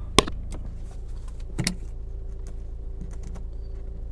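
A plastic phone-holder arm mount handled at the windshield: a sharp click a fraction of a second in, another about a second and a half in, and a few light ticks and knocks between. Underneath is a steady low hum inside the car.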